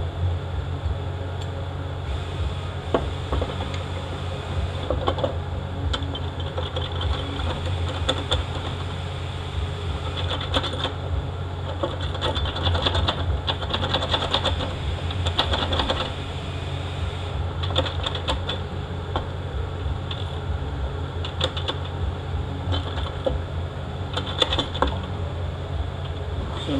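Steel drive chain and sprockets of a Ford CD4E transaxle clinking and rattling in irregular bursts as they are worked down into the aluminium case, over a steady low hum.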